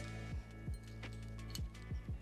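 Background music: a steady deep bass with a few heavy, pitch-dropping drum hits.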